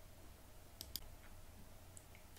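Near silence: quiet room tone with a low hum and a couple of short, faint clicks about a second in.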